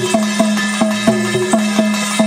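Rhythmic folk percussion accompanying a Gavari dance: evenly spaced drum strikes about four a second over a steady ringing metallic tone.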